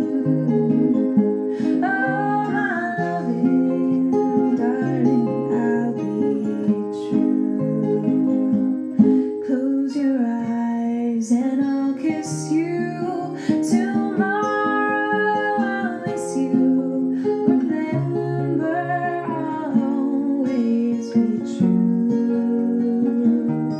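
Acoustic guitar playing an instrumental passage of a song, steady chords with changing bass notes, with a melody line that slides up and down above them at several points.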